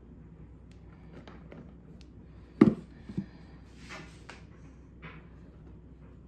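Bread flour being scooped into a lightweight plastic bowl on a kitchen scale. A few scattered knocks and short rustles, the loudest a thump about two and a half seconds in.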